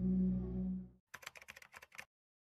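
A steady low electronic drone fades out about halfway through. Then comes a quick run of keyboard typing clicks, about ten in under a second: a typing sound effect as the 'New Update' title types itself onto the screen.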